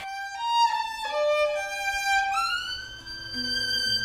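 Solo violin bowing a slow melody in an Indian classical style: a few short held notes, then a slow upward slide into a long sustained high note.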